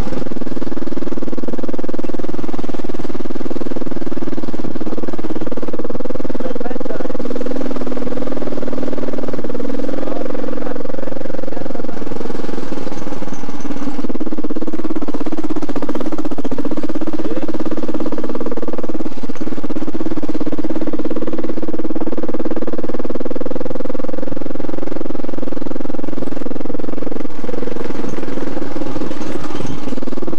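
Motorcycle engine running loud and steady while riding along a rough dirt lane.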